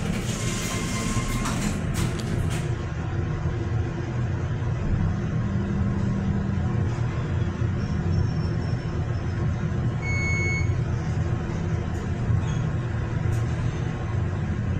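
Montgomery hydraulic elevator: the doors close with a clatter of clicks over the first couple of seconds, then the car travels with a steady low hum from its hydraulic drive. About ten seconds in, a single short electronic chime sounds, marking the car's arrival at a floor.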